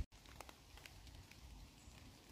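Near silence: faint outdoor background hiss with a few faint ticks.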